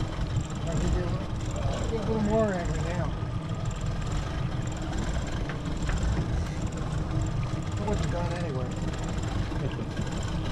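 Steady low rumble of a boat's twin outboard engines running slowly, mixed with wind buffeting the microphone, under faint voices.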